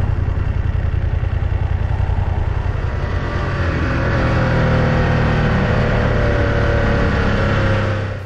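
Motorcycle engine running at road speed, heard from a camera on the windscreen together with wind and road noise. About halfway through, the engine note turns steadier and a little louder.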